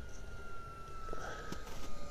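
Induced-draft blower on a wood boiler, a small electric fan salvaged from an old John Wood water heater, running with a steady motor whine whose pitch sinks slowly as the fan slows on its speed controller.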